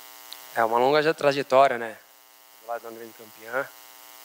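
A man speaking briefly into a microphone, in two short phrases, over a steady electrical mains hum from the sound system that carries on through the pauses.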